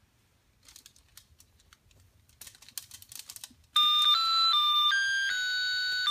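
Faint clicks and rustling, then about two-thirds of the way in a musical plush birthday-cake toy starts playing a loud electronic beeping tune, one clear note at a time stepping up and down in pitch.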